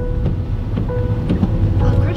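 Steady low rumble of a car driving on a wet road, heard from inside the cabin, with music playing quietly over it.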